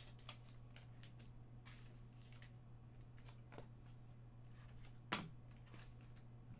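Trading cards being handled by hand: faint scattered ticks and card-on-card slides, with one sharper click about five seconds in, over a low steady hum.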